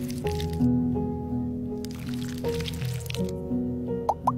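Background music with held notes, over wet squishing of a spoon digging into canned cat food pâté during the first couple of seconds.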